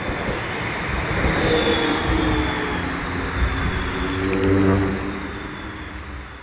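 A tram passing close by: a steady rumble with a humming tone that swells in the middle and then fades away near the end.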